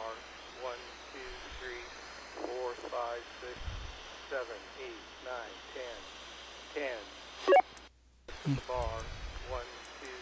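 A man's voice received over an FRS radio link on an Icom IC-R20 scanner, with steady radio hiss behind it. The reception is clear. There is a brief loud click about seven and a half seconds in, then the signal drops out for a moment before it returns.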